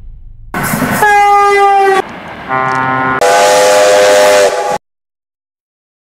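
A train horn sounding three blasts, each at a different pitch, the last a chord of several tones with a hiss of air. The horn cuts off suddenly.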